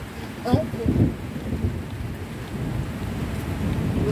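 Windy rainstorm: steady rain with gusts rumbling on the microphone, swelling about half a second and again about a second in.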